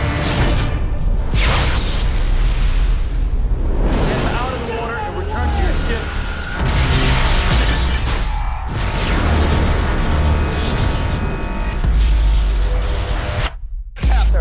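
Action-film trailer sound mix: music layered with deep booms and explosion-like blasts, loud throughout, breaking off abruptly just before the end.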